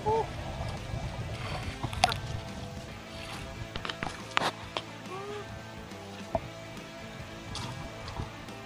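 A few sharp knocks and thumps as a freshly caught fish is handled against the boat's hull, with light water sloshing under a low steady hum.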